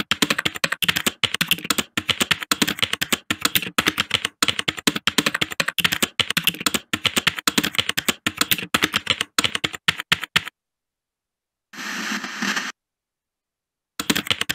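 Typing sound effect: rapid keystroke clicks that stop about ten and a half seconds in, followed a second later by a brief burst of noise.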